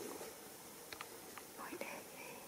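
Faint handling sounds with a few small clicks, then a soft, high-pitched rising squeak from a baby monkey near the end.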